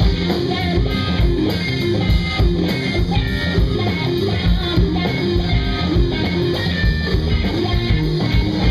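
A live rock band playing loudly: electric guitar, electric bass and drum kit driving a steady beat.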